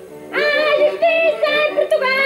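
Portuguese folk song: a high singing voice comes in about a third of a second in and holds long, wavering notes over a steady instrumental backing.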